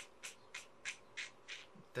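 Faint, regular scraping strokes, about three a second.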